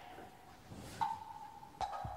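Electronic music score for a dance film: a held electronic tone that steps up in pitch about a second in, with a sharp percussive knock near the end.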